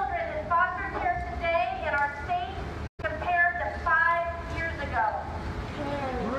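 A woman speaking, her words too indistinct for the recogniser to make out. The sound cuts out completely for an instant about halfway.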